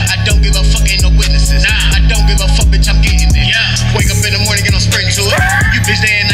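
Trap hip-hop track: deep 808 bass notes under fast, regular hi-hat ticks, with a pitch-bending vocal line over the beat.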